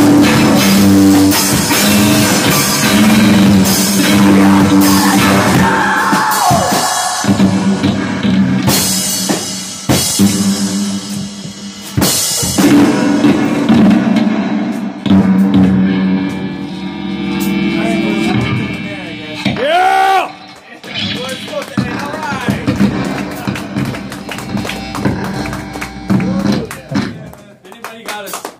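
Live rock band playing: held low guitar notes with a drum kit and scattered drum hits, plus a few sliding pitches. The song gets quieter over the last several seconds and stops just before the end.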